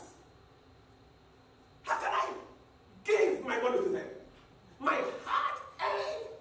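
A man's voice shouting in short loud bursts, starting after about two seconds of quiet; the words are not made out.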